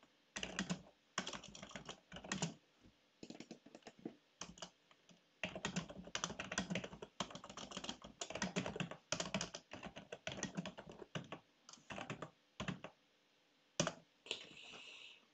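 Typing on a computer keyboard: runs of quick keystrokes broken by short pauses, as shell commands are typed into a terminal.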